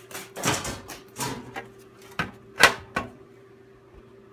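Handling noise: a series of about six short knocks and scrapes, the loudest about two and a half seconds in.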